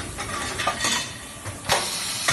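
Stainless steel kettle bodies clinking and knocking against the jigs of a circular welding machine as they are loaded and unloaded, with a sharp metal clank near the end, over a hiss.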